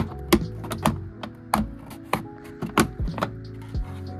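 A string of sharp, irregular plastic clicks and snaps as the armrest trim on a Honda Fit's door panel is pried loose with a plastic trim removal tool and its clips pop free, over background music.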